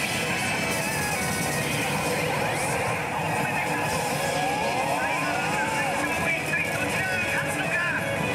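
Pachislot machine playing the sound effects and music of its screen animation over the loud, constant din of a pachinko hall, with sweeping, gliding tones in the middle.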